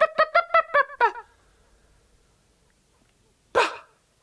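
A voice performing sound poetry: a fast run of short, high, yelping syllables, about six a second, that drops in pitch and stops about a second in. After a pause, a single breathy, hissing exhalation comes near the end.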